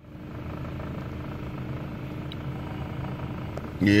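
A steady low mechanical hum with a faint steady tone running through it.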